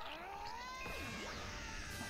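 Faint audio of an anime fight scene playing in the background: several quiet tones gliding up and down, from the episode's sound effects and score.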